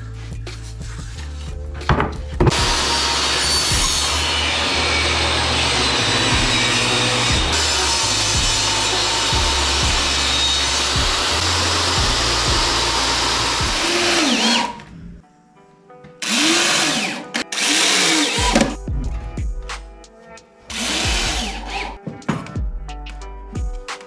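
A power woodworking tool cutting cedar boards in one long, steady run of about twelve seconds, starting a couple of seconds in. Later a corded electric drill is run in short bursts, its speed rising and falling each time.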